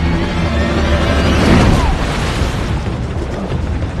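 Dramatic film score over a deep, steady low rumble, swelling to a loud peak about a second and a half in.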